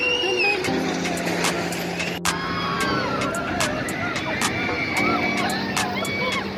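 Drop-tower amusement ride running, with a steady mechanical hum that cuts in about a second in, drops out, and returns near the end. Over it come many short calls and shouts from voices.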